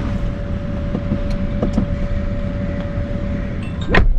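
Steady low rumble of a car's cabin with the vehicle running, with a constant faint hum over it; the sound cuts off abruptly near the end.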